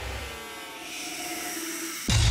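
Intro sound design between two heavy music hits: a quieter sweeping texture of gliding tones, with a hiss that brightens toward the end.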